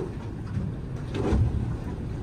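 Low, uneven rumble of wind buffeting the microphone on a boat at sea, with the wash of water around the hull.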